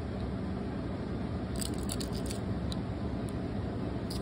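Steady low room hum, with a few faint light clicks near the middle from a small die-cast toy car being turned over in the fingers.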